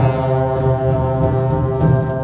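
Sixth-grade concert band playing sustained chords with the low brass strongest, moving to a new chord near the end.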